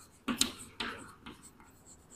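Chalk writing on a chalkboard: a few short, scratchy strokes with brief gaps between them.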